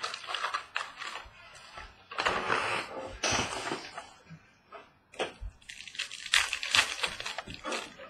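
Packs of 2017 Donruss Optic baseball cards being pulled from their cardboard box and handled: foil wrappers crinkling in bursts of rustling, with sharper crackles of the wrapper being torn open later on.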